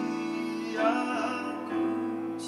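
Live solo acoustic guitar with a male voice singing a slow song. A sung phrase comes in about a second in over held guitar notes.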